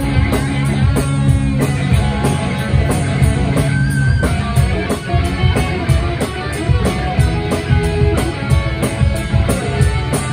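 Live rock band playing: electric guitars, bass guitar and a drum kit keeping a steady beat.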